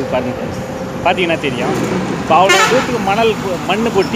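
A man talking, over a steady background of road traffic noise.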